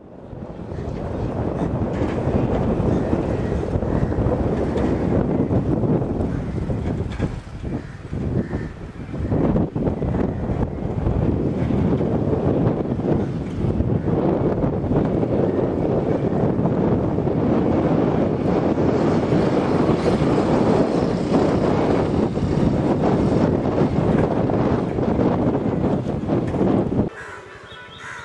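Wind buffeting an outdoor camera microphone: a steady low rush that wavers in strength, dips briefly about eight seconds in, and cuts off abruptly near the end.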